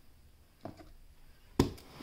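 Handling noise on a wooden desk: a faint tap about two-thirds of a second in, then one sharp knock near the end as a hand takes hold of a cardboard box.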